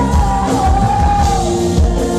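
Female lead singer with a live band of keyboard, bass guitar and drums, holding a long sung note that falls away about a second in, over a steady drum beat.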